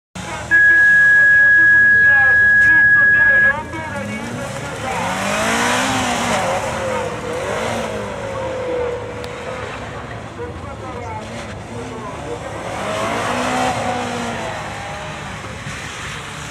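A loud steady electronic beep lasting about three seconds, then a GC8 Subaru Impreza competition car's engine revving hard, rising and falling with gear changes and throttle lifts, as it is driven flat out through gymkhana turns. Tyres squeal in the corners.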